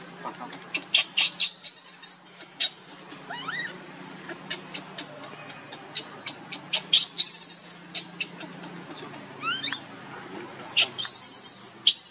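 Newborn macaque crying: repeated high-pitched squeals, several rising in pitch, with clusters of sharper shrieks about a second and a half in, around seven seconds in and near the end.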